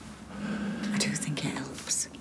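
Quiet, hushed speech: a voice talking softly, close to a whisper, starting just after the beginning.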